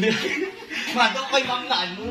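A man and a woman chatting and chuckling.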